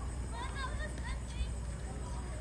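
Faint voices of people talking and calling out, over a steady low rumble.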